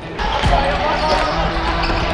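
Live basketball game sound in a gymnasium, starting abruptly a moment in: the ball thudding on the hardwood court a few times over players' voices and court noise.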